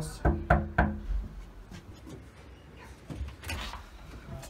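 Three quick knocks of a fist on a front door, then the door opening near the end.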